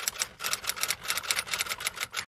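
Typing sound effect: a rapid, even run of keystroke clicks, about eight to ten a second, as title text is typed out on screen.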